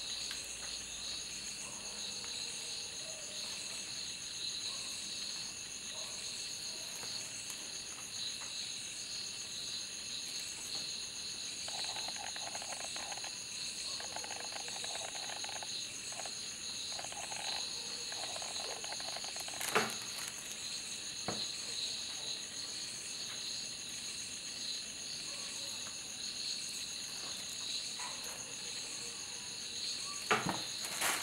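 Steady, high-pitched chirring of crickets, with two faint clicks about two-thirds of the way through.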